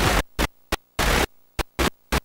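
Hissing playback static from a blank stretch of videotape, coming in about six short bursts at irregular intervals with near-silent gaps between them.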